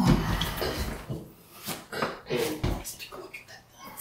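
A kitchen cabinet door shutting at the start, then scattered knocks and shuffling with some low, indistinct talk.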